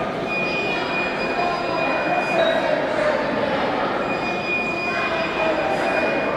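Dense, continuous hubbub of a large crowd talking in a reverberant hall, with a thin steady high tone that comes and goes.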